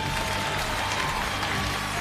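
Studio audience applauding over background music.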